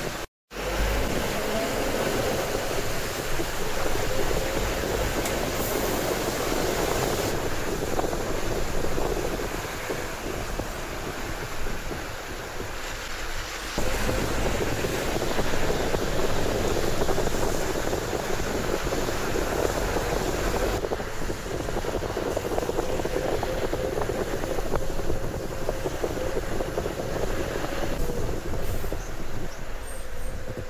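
Steady ride noise inside a moving road vehicle on wet roads: tyre and engine noise with a faint wavering whine. The sound drops out briefly just after the start and changes level abruptly a few times.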